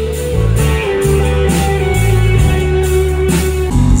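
Live band playing an instrumental passage between sung lines: electric and acoustic guitars, bass guitar and drums, with a guitar holding long notes over a steady bass line and cymbal hits.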